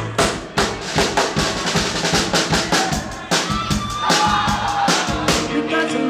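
A live band playing dance music with the drum kit to the fore: a steady beat of bass drum and snare hits, with a few held notes from the other instruments.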